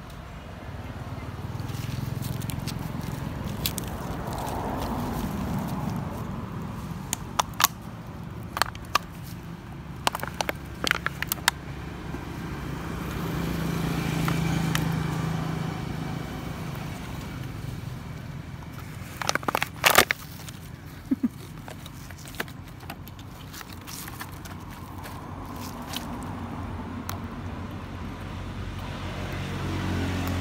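Thin plastic water bottle crackling in sharp clicks as a macaque grabs and handles it. The clicks come in two clusters, about a third of the way through and again about two-thirds through, over a steady low background noise.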